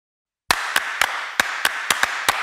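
Sharp hand claps, six in all, in two quick groups of three about a quarter second apart, starting after half a second of silence, over a steady hiss.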